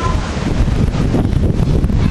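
Wind buffeting the microphone: a loud, irregular low rumble.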